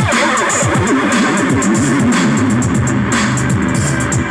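Live electronic music: a steady drum-machine beat of about four kicks a second under a warbling synth line.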